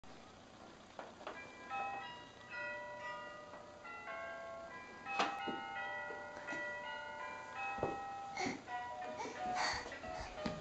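Children's electronic toy playhouse playing a tinny tune of short, high electronic notes, set off by the doorbell button beside its door. Several sharp knocks and taps come through the tune as the toy is handled.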